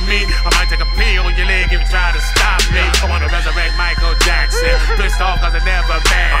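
Live hip hop performance: a rapper's voice through a microphone over a loud beat with a deep bass line and regular drum hits.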